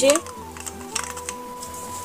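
Painted wooden bangles clicking lightly against each other and the wooden shelf as they are set down in stacks, a few clicks in the first second. Faint background music underneath.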